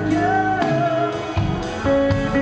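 Live pop-rock band of electric guitar, bass, drums and piano playing, with a male lead voice singing a held, gently wavering note over it.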